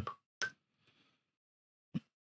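Near silence, broken by two short clicks about a second and a half apart.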